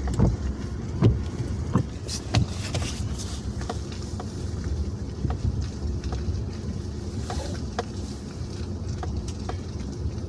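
Inside a vehicle driving slowly over a snow-packed, rutted road: a steady low engine and road rumble with frequent sharp clicks and knocks from the cab, heaviest in the first few seconds.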